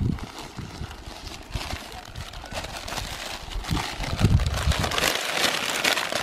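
Plastic bag and newspaper wrapping crinkling and rustling as food parcels are unwrapped by hand, getting louder toward the end.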